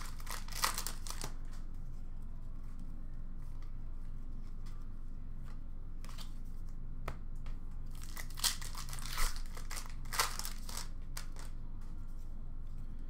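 Trading card pack wrappers torn open and crinkled, and the cards inside slid and shuffled against each other, heard as short spells of crackling and clicks: about a second at the start, again around six to seven seconds in, and from about eight to eleven seconds. A steady low hum lies underneath.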